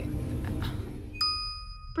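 A single electronic chime (a ding) rings out suddenly a little over a second in, one clear sustained tone with overtones. It sounds over a low steady hum of spaceship ambience.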